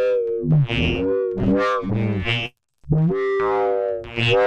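Ableton Live's Roar distortion device feeding back into itself: a pitched electronic drone whose vowel-like overtones shift about every half second. It drops out briefly about two and a half seconds in.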